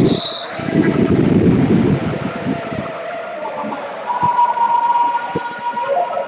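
Indoor volleyball match: a short, high whistle blast right at the start, then a loud burst of shouting for about two seconds. In the second half a steady tone is held for about two seconds, and two sharp smacks fall within it.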